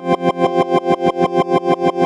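Teenage Engineering OP-1 synthesizer holding a chord with its tremolo LFO pulsing the volume evenly, about seven times a second. The tremolo runs unsynced, so where its pulses fall depends on when the keys were pressed.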